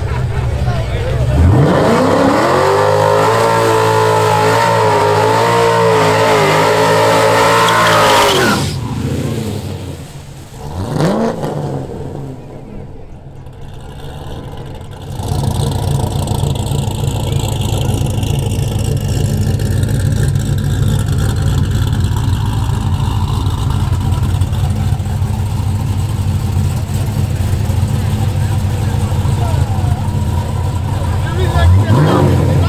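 Chevrolet Corvette's V8 revved up and held at high revs for about seven seconds, its pitch wavering, then cut off sharply. A single short blip follows a couple of seconds later, and from about halfway the engine settles into a steady low idle.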